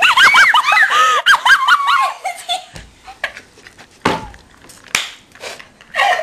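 Girls laughing hard in rapid, high-pitched bursts for about two seconds, then a few scattered knocks and handling bumps.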